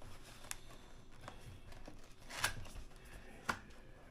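Fingers working at the top of a cardboard box to open it, giving a few quiet scrapes and short sharp clicks about a second apart, the loudest about two and a half seconds in.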